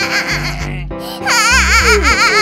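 A young child's crying wail, wavering up and down in pitch, starting a little past halfway, over background music with a steady bass line.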